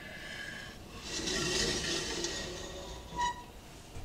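Gas stove burner lit on high, its flame hissing steadily and swelling to a brighter hiss about a second in before easing off near the end.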